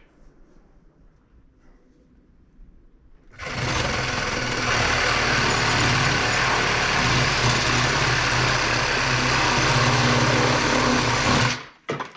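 Electric reciprocating saw cutting through a wooden base board. After about three quiet seconds it starts suddenly, runs loud and steady for about eight seconds, and cuts off abruptly just before the end.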